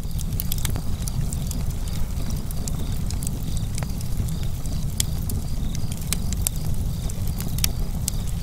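Wood fire burning with a steady low rumble and frequent sharp, irregular crackles and pops.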